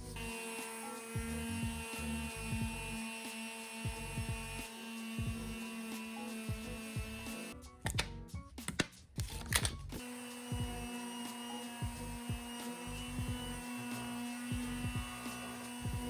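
Makita electric finishing sander with a dust-extraction hose running steadily against wood as the old finish is scuff-sanded, under background music. The sander sound drops out for about two seconds midway.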